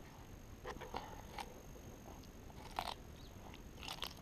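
An African spurred (sulcata) tortoise biting and chewing cucumber: about five short crunches, the loudest near three seconds in.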